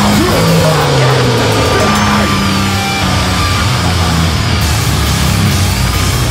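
A metalcore band playing live and loud: distorted guitars and bass over a pounding drum kit with crashing cymbals, and a vocalist screaming into the microphone.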